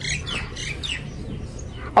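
Birds chirping: a few short, high chirps in the first second, over a steady low hum.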